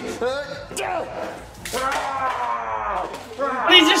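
A cup of water thrown into a face, heard as one sharp slap-like splash about one and a half seconds in, among laughter and a long drawn-out vocal cry.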